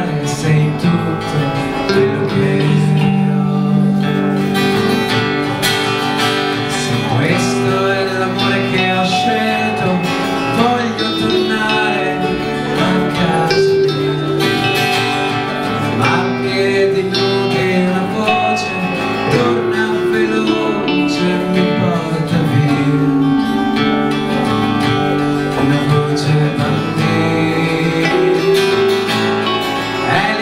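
Acoustic guitar strummed, with an electric guitar playing alongside it, in continuous live music.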